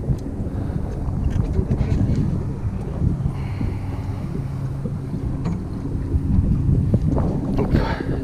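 Boat engine running with a steady low drone, with wind buffeting the microphone.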